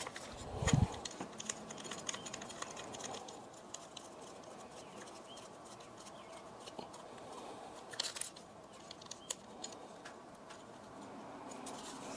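Faint handling of a metal quick-release camera plate against a camera body: small scattered clicks and rubbing, with a low knock under a second in and a sharper click about eight seconds in.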